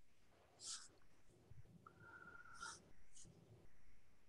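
Near silence on an open call line: faint breath-like hisses and low murmur, with a brief faint steady tone about two seconds in.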